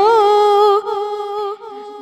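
A young female voice, unaccompanied, sings the last syllable of an Urdu nazm line and holds it on one steady note. After just under a second the note drops to a softer level, carries on briefly and fades out near the end.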